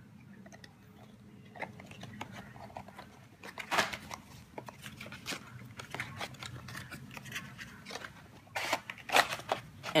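Cardboard retail box being handled and its printed outer sleeve slid off the inner cardboard tray: scattered scrapes, rubs and light knocks of cardboard, louder in the last second and a half.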